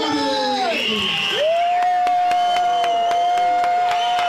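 A crowd cheering and clapping, with several voices calling out at first. From about a second and a half in, one voice holds a long, high, steady whoop.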